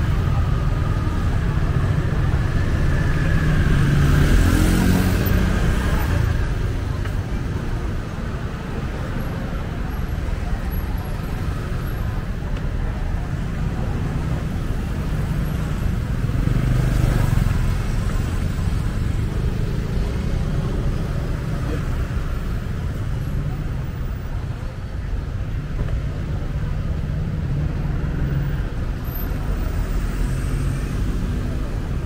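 Busy street traffic, with motorbike and car engines running close by. The traffic noise swells about four to five seconds in and again a little past halfway, as vehicles pass.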